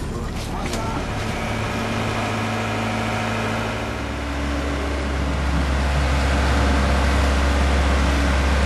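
A boat engine running steadily with a low hum that grows louder about halfway through, with voices in the background.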